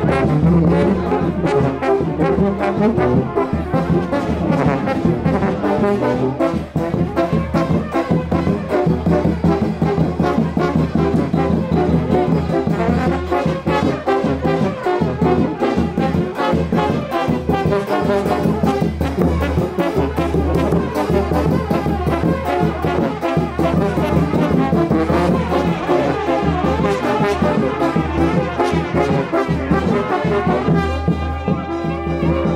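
Brass band of trumpets and trombones playing a kolo dance tune with a steady beat.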